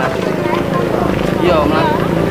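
A person's voice speaking over a steady low hum.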